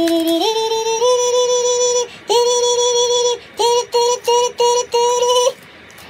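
Synthesized, voice-like melody: long held notes that step up in pitch, a short break about two seconds in, then a run of five short repeated notes that cuts off about half a second before the end.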